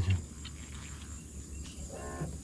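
Faint, steady high-pitched chorus of insects in the surrounding swamp vegetation, with a low even rumble underneath.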